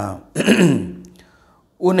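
A man clears his throat once, about half a second in, a rough burst that drops in pitch and fades.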